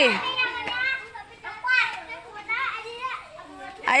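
Young children's high voices chattering and calling out at play.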